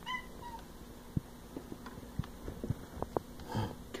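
A house cat gives a short meow right at the start, followed by scattered faint clicks and taps.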